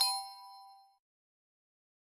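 Chime sound effect marking the answer reveal: the last strike of a quick run of bell-like notes, then two ringing tones fading out by about a second in.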